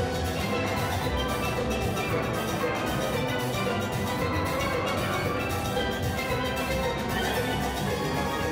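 Steel band playing: many steel pans struck with mallets in a dense, continuous run of pitched notes at an even level.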